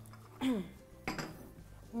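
Porcelain coffee cups, saucers and water glasses clinking on a metal serving tray as they are handed round and taken. A brief voice sound comes about half a second in.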